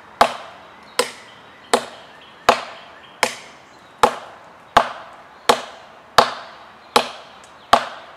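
A camp knife chopping into a six-inch oak limb: about eleven sharp strikes at a steady pace of roughly one every three-quarters of a second, each fading quickly.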